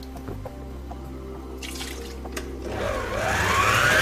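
Electric stand mixer switched on about three seconds in, its motor whine rising steadily in pitch and getting louder as it speeds up to beat egg yolks. Before that, a low steady hum and a few light clicks.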